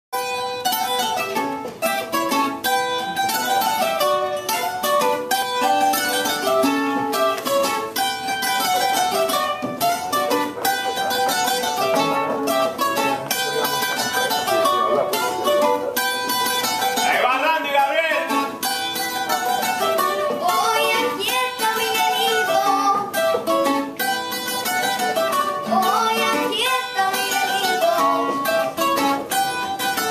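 Puerto Rican cuatro picking a fast run of notes in a lively melody, with another string instrument accompanying.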